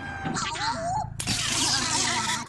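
A minion's high-pitched squealing cry that slides up and down in pitch, then, just after a second in, a louder and harsher noisy outburst.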